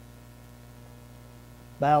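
Steady low electrical hum, like mains hum in a recording or sound system, in a pause with no speech. A man's voice comes back in near the end.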